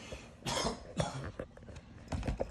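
A cat hissing at another cat in two short bursts, the first about half a second in and a sharper one about a second in: a defensive warning over a cardboard box it is sitting in.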